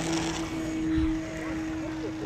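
Electric RC model aeroplane's motor and propeller running at full throttle during take-off and climb-out, a steady buzzing tone. A low thump about a second in.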